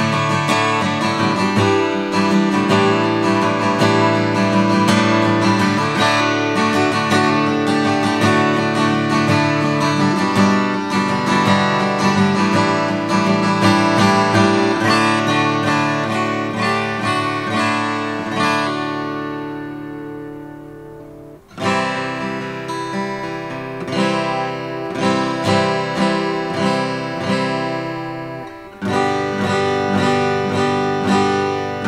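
Brand-new Asturias D. Emblem dreadnought acoustic guitar, with a German spruce top and solid rosewood back and sides, played solo with ringing chords. About two-thirds of the way through, a chord is left to ring out and fade before the playing starts again.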